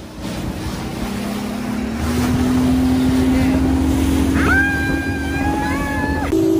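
Motorboat engine speeding up about a second in, then running steady with the rush of wind and water. Near the end, a woman's long, held excited yell.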